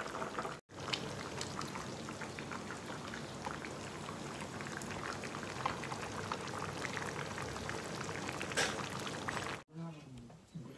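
A thick stew simmering in a frying pan on a gas burner: steady bubbling full of many small pops. It breaks off briefly just under a second in.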